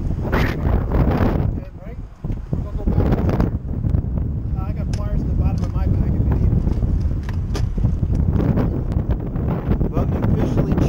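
Wind buffeting the microphone of a head-mounted camera on an open boat: a steady low rumble, with scattered small clicks and knocks from handling gear.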